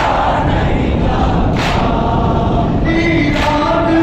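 A crowd of men chanting a nauha (Muharram lament) together, the sung line standing out more clearly near the end. A sharp group slap lands about every second and three quarters, the unison chest-beating of matam.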